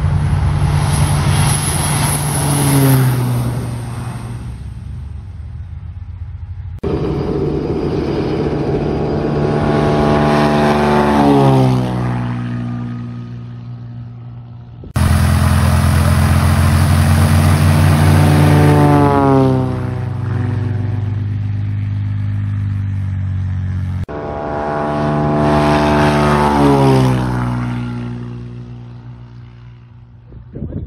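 Single-engine propeller airplanes making four low passes over a runway, cut one after another. Each engine note rises in level and then drops in pitch as the plane goes by, and the note fades away before the next pass starts abruptly.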